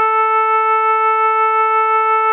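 A melodica holding one long, steady A note (the A above middle C) with a reedy tone.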